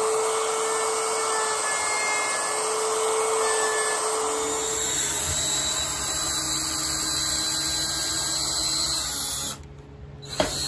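A plunge router cutting a pickup cavity in a pine guitar body, a steady high whine. About four and a half seconds in it gives way to a lower-pitched electric drill boring a long hole through the wood. The sound drops away briefly near the end.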